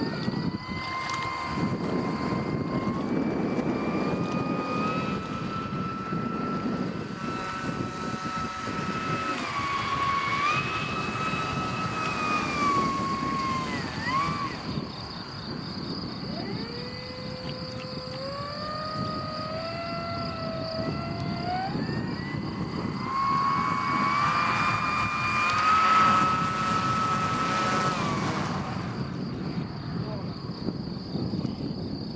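Propeller motor of a radio-controlled seaplane whining as it taxis on the water, its pitch stepping up and sliding down with the throttle. The whine falls away about halfway through, climbs again a few seconds later and drops near the end, over a steady low rush of wind and water.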